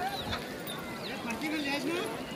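Outdoor hubbub of people's voices talking indistinctly, with no clear words, over a steady background murmur.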